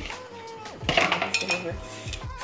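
Kitchenware clattering: a plastic bowl and a metal pot knocking and scraping as handfuls of dry bread cubes are handled in the pot, busiest about a second in.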